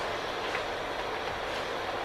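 Steady background hiss of room tone and recording noise, with no distinct events.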